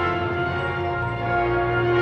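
Orchestral end-credits music holding sustained chords with ringing, bell-like tones; the bass note changes about a second in.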